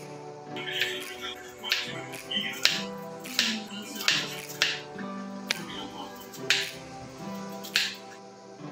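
Knife cutting through cucumber onto a plastic cutting board, a sharp click about once a second at uneven intervals, over background music.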